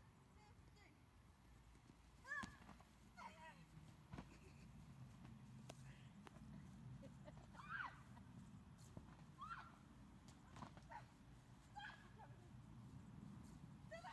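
Faint, short squeals and yelps of voices, about five of them, over a low steady rumble.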